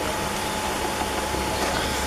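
A pause with no speech: only a steady background hiss with a faint steady hum from the recording or room.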